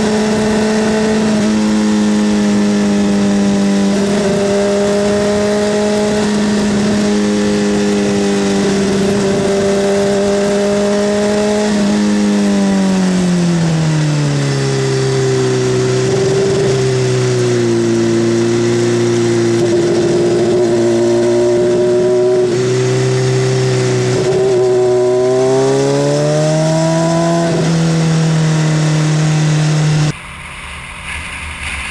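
Motorcycle engine running hard under the rider, recorded by a camera mounted on the bike; the engine note holds high, drops smoothly about halfway through, then climbs again near the end as it speeds up.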